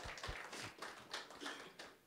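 Scattered clapping from a few people in a room, irregular claps tapering off.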